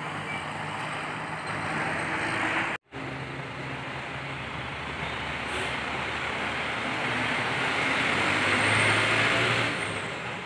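Buses passing: a coach's engine running and its road noise as it pulls away, a sudden break about three seconds in, then a city bus driving past close by, its engine and tyre noise growing to the loudest point near the end before dropping off.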